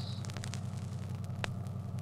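Pause in an old radio broadcast recording: a steady low hum under faint hiss and crackle, with a single click about a second and a half in.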